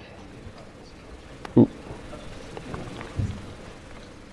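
Quiet room tone of a lecture hall over a microphone, broken by a presenter's short "ooh" about a second and a half in and a brief low sound near the end.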